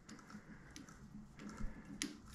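Faint scattered clicks of a hex key turning the adjusting screw of a Wohlhaupter boring and facing head, cranking its slide back by hand, over a low steady hum.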